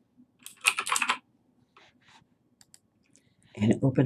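Typing on a computer keyboard: a quick run of keystrokes about half a second in, then a few fainter clicks. A woman's voice starts near the end.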